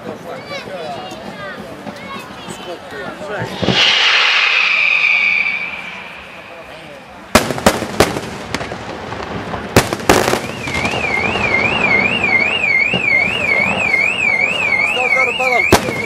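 Aerial fireworks shells bursting: about half a dozen sharp bangs in two clusters, a couple of seconds apart. Just after the second cluster a car alarm starts warbling up and down and keeps going. Before the bangs, crowd voices and a loud hissing whistle lasting about two seconds.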